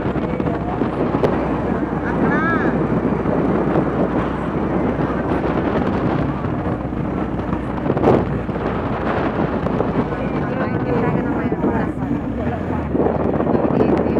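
Riding in a moving vehicle: a steady low engine hum under wind buffeting the phone's microphone, with indistinct voices in the background.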